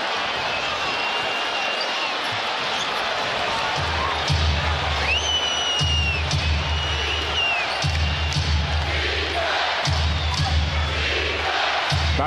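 Arena crowd noise with sneakers squeaking on the hardwood and a basketball being dribbled. About four seconds in, arena music with a heavy bass beat starts, pulsing in phrases of about two seconds.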